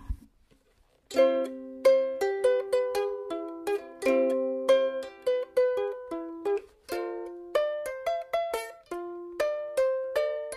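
Ukulele played as a short melodic lick of plucked notes, each struck sharply and ringing briefly, starting about a second in.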